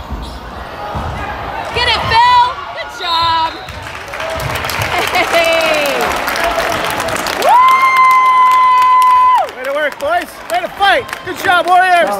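Basketball game sounds on a hardwood court: ball bouncing, short sneaker squeaks and crowd noise, then a steady electronic horn held for about two seconds past the middle, followed by more squeaks.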